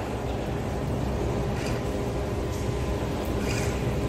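Steady low rumble of machinery at a tunnel construction site, with a faint steady hum coming in about a second in.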